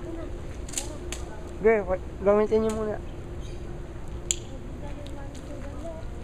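A few sharp clicks from a pistol being handled during make-ready, a little under a second in, about a second in and, sharpest, near four seconds, with a short burst of voice between about two and three seconds.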